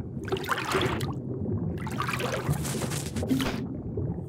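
Underwater ambience sound effects: water gurgling and swishing over a steady low rumble, swelling twice, briefly about a tenth of a second in and for longer from about two seconds in.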